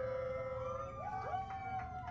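Several men's voices howling in long, drawn-out shouts. About a second in, two voices jump higher in pitch one after the other and hold the new note.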